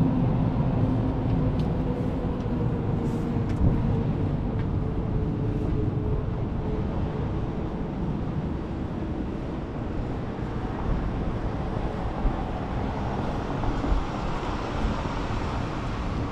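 City street traffic: a steady low rumble of passing vehicles, with a humming tone that fades away over the first several seconds.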